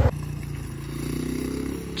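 ATV engine idling: a low, steady hum.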